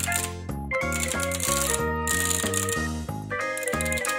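Background music: an upbeat tune with a steady bass and a melody of short notes changing several times a second, with bursts of bright hiss at times.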